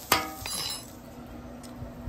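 Metal spatula striking a flat-top steel griddle once, a sharp clink that rings briefly, while pulled pork is turned on the hot plate.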